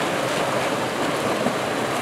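Steady splashing and churning of water from many swimmers sprinting across a pool.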